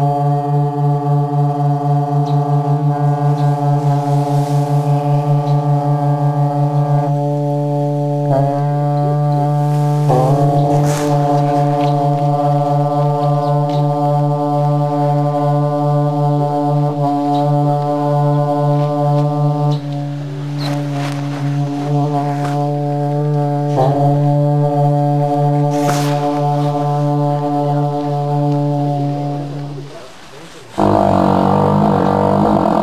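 A pair of dungchen, long Tibetan copper ritual horns, sounding a deep sustained drone in a Drikung Kagyu ritual melody. The tone wavers in quick pulses for the first several seconds. It breaks and is sounded afresh about eight, ten, twenty and twenty-four seconds in, then stops right at the end.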